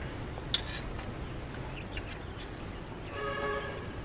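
Steady low outdoor background rumble, with a sharp click about half a second in and a short pitched tone lasting about half a second a little after three seconds in.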